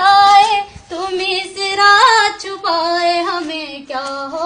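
A woman singing solo, without instruments, holding long notes that waver and slide between pitches, with short breaths between phrases.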